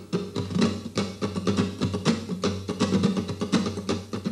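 Two nylon-string flamenco guitars playing a waltz as a duet, a quick, steady stream of plucked notes.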